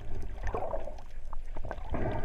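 Underwater sound heard through a GoPro HERO3 Black's waterproof housing: a muffled low rumble of water with two soft swishes of moving water, about half a second in and near the end, and a few small clicks.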